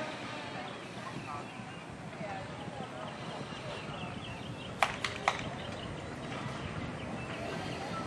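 Birds chirping repeatedly over a steady outdoor background, with three sharp knocks in quick succession, about a quarter second apart, about five seconds in.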